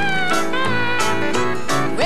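Country band playing the instrumental introduction to a song: a sliding, bending lead melody over bass and a steady beat.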